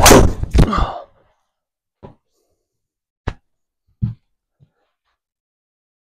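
Golf driver striking a ball off a plastic tee: a sharp, loud impact, then a second loud knock about half a second later. Four small, faint knocks follow over the next few seconds.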